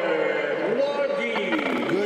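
A man's commentary voice holding one long drawn-out word that slides in pitch, then more speech, over steady arena crowd noise.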